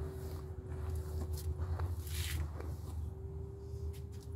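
Hairbrush pulled through long hair in a few short strokes, over a steady low hum.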